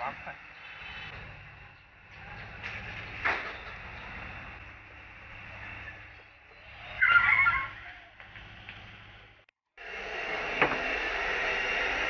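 Quiet background with a few light knocks and a brief louder sound about seven seconds in. Then, from about ten seconds in, the steady roar of a strong stove fire and steam rising through a stack of bamboo dumpling steamers.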